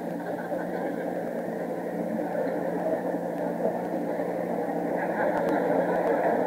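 Large audience laughing in a sustained wave that swells slightly toward the end.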